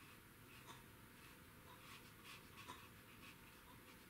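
Near silence with a few faint, soft scratches of a watercolor brush stroking paper.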